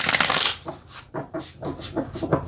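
A deck of tarot cards being shuffled by hand: a rapid flutter of card edges that stops about half a second in, followed by a few separate soft clicks as the cards are handled.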